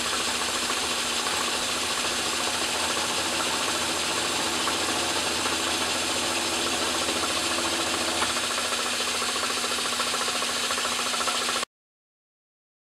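Atlas Craftsman metal lathe running steadily, its drive and gears making a constant mechanical whine, while a parting tool is fed into the spinning quarter-inch hex brass stock to part off the gland nut. The sound cuts off suddenly near the end.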